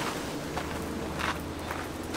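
Fabric car cover rustling as it is dragged off a car, with footsteps shuffling on gravel.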